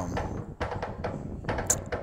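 Scattered light clicks and taps, several a second, over a low background hum.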